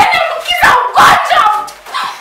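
Loud, short shouted cries and yelps from two people struggling with each other, several in quick succession.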